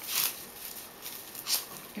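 Plastic curling ribbon rustling as it is handled and pulled, two brief rustles a little over a second apart.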